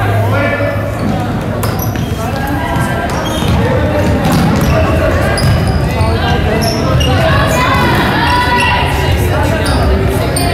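Basketball bouncing on a hardwood gym floor during play, with players and spectators calling out, echoing in a large gym.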